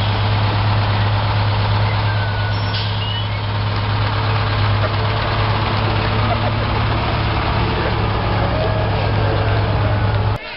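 An old fire engine's engine running at a slow parade pace as the truck rolls close past, a loud steady low hum that holds level throughout.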